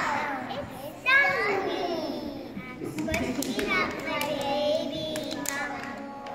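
Young children's high voices chattering and calling out over one another, with a loud high call that falls in pitch about a second in, and a few sharp hand claps.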